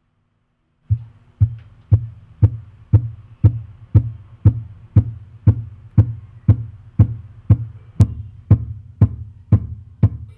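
Electronic music with a steady, heavy kick-drum beat about twice a second, starting about a second in, played back through a homemade 2.1 amplifier and its subwoofer.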